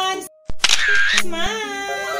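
Background music with a sung melody, cut off about a quarter second in. A sharp click and a short camera-shutter-like burst of noise follow: the sound effects of a subscribe-button animation. Then the music resumes.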